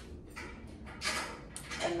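Faint handling clicks and rustling as a small USB-C wireless-microphone receiver is plugged into an iPad's charging port.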